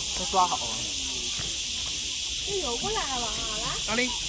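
Snatches of people's voices, a short utterance about half a second in and a longer one near the end, over a steady hiss.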